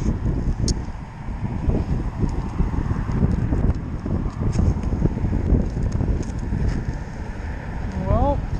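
Wind buffeting the microphone: an uneven rumble that rises and falls in gusts, with a few faint clicks.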